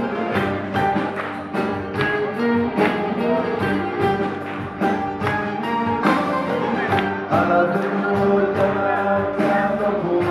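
Live band playing a Greek popular song, with a violin among the instruments over a steady percussive beat.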